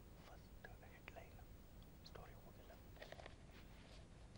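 Near silence with faint, indistinct voices and a few soft clicks.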